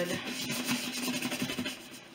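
A soft brush scrubbing wet, soaped Epi leather on a handbag, an irregular rubbing and scratching that fades near the end.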